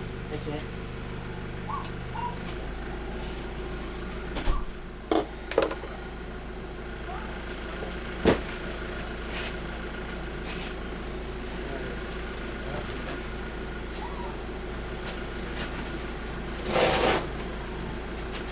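Scattered knocks and clunks of objects in a garage being moved and handled during a search, the sharpest few in the first half, with a brief rustling burst near the end. A steady low hum runs underneath.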